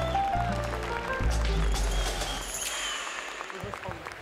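Jazz piano trio playing: grand piano notes over sustained low bass notes, dying away near the end.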